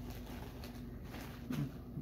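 Quiet room tone: a faint steady low hum, with a brief low voiced murmur about one and a half seconds in.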